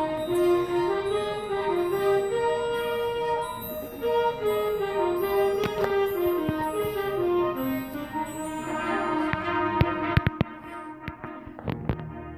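Middle school concert band playing, brass carrying a moving melody, then holding a chord for the last few seconds. A few sharp clicks come near the end.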